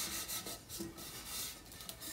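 Hands rubbing and smoothing paper wrapped around a painted tumbler: faint, soft rubbing strokes.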